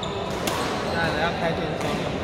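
Badminton rackets striking shuttlecocks, two sharp hits in a reverberant sports hall, with people talking.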